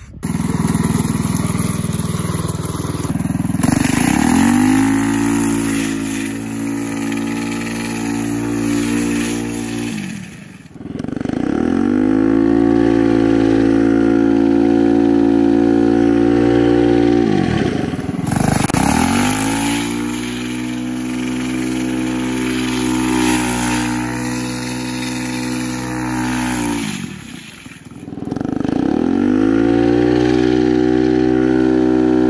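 Small single-cylinder go-kart engine with an open exhaust pipe, revving hard under load. It pulls up four times, about 4, 11, 19 and 29 seconds in, holds high, and dips briefly in between as the throttle comes off.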